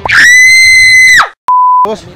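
Comedy sound effect edited in: a loud, shrill, high-pitched scream held steady for about a second, then dropping away. After a brief dead silence comes a short steady beep tone.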